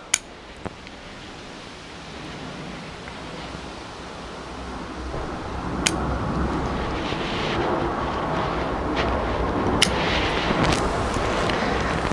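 Bonsai pruning scissors snipping twigs of Lonicera nitida: a few sharp, widely spaced clicks of the blades closing. Under them a steady rumbling background noise that grows louder over the first few seconds and then holds.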